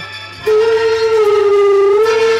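Live band playing amplified rock music: after a brief dip, one long held note with many overtones comes in about half a second in and sags slightly in pitch.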